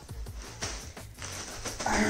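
Background music with a steady low beat, over the rustling of a plastic zip-top bag of cereal being handled.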